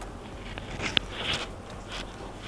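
Faint rustle of yarn being worked with a crochet hook, with one sharp click about a second in, over a low steady hum.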